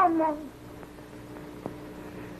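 A woman's drawn-out, gliding vocal coo that falls in pitch and fades within the first half-second, heard as a cat-like sound. After it comes the faint steady hum of an early sound-film track, with a faint click or two.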